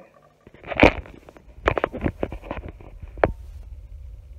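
Handling noise: a rustle about a second in, then a run of sharp clicks and knocks, then near the end a low steady rumble of a pot of water boiling on the stove.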